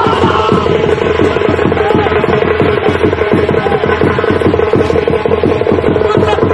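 Music of rapid, steady drumbeats over a continuous held tone.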